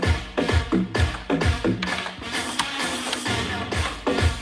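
Electronic dance music mixed live on a DJ controller, with a steady kick drum about twice a second that drops out about halfway through, leaving the upper layers playing on.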